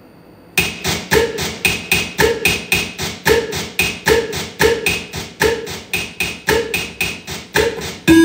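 Electronic percussive loop: a steady pattern of sharp, pitched clicky hits, about three a second, starting suddenly about half a second in.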